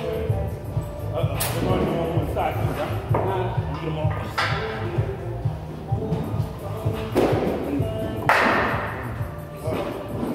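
Background music with a steady beat, with about four metallic clanks and thuds of iron weight plates being handled and loaded, the loudest two near the end.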